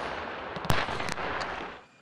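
Military range sound of weapons fire: the rolling tail of a blast dying away, a sharp shot about two-thirds of a second in and fainter reports just after, then the sound fades out near the end.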